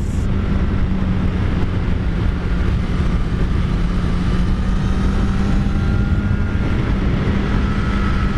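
Kawasaki Z900 inline-four engine running at steady revs while the motorcycle is ridden at speed. The even engine note is mixed with a rushing haze of wind noise.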